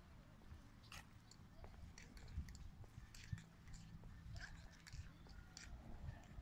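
Near silence: faint outdoor background with a low rumble and scattered soft ticks and chirps.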